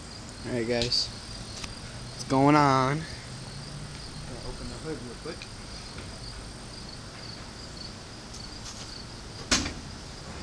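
Crickets chirping steadily outdoors. A person's voice is heard briefly twice in the first three seconds, and there is one sharp knock near the end.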